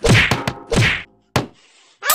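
Punches landing on a person: a quick run of whacks in the first second, a short silence, then one more sharp smack.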